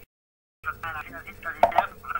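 A person talking over a gated voice line that cuts to dead silence for the first half second, with one sharp knock about one and a half seconds in.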